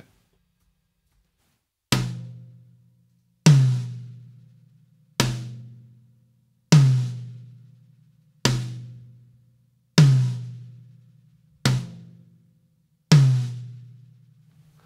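High tom struck with single strokes, alternating between a Promark Thunder Rod (a bundle of thin dowels) and a wooden drumstick, eight hits about one every second and a half, each left to ring out. The hits alternate softer and louder, the softer, drier ones from the Thunder Rod and the louder ones from the wood stick.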